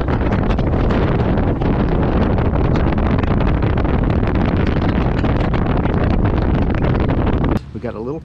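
Bass boat running fast on a lake: a steady, loud rush of wind on the microphone, mixed with the boat's engine and hull noise. It cuts off suddenly near the end.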